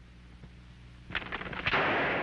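Two gunshots about half a second apart, the second louder with a ringing tail.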